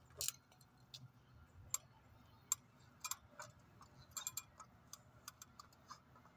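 Faint, irregular small clicks and clacks, a dozen or so, from a string of Christmas lights being handled and wrapped among bare tree branches. The loudest come just after the start and about two and a half seconds in, with a quick cluster near four seconds.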